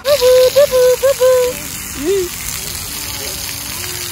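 Splash pad fountain jets spraying and splattering onto wet concrete, a steady hiss of falling water.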